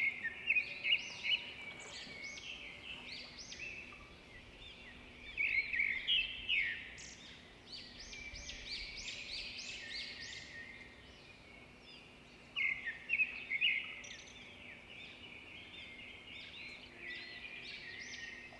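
Birds chirping: many quick, high chirps in clusters with short pauses, fairly faint.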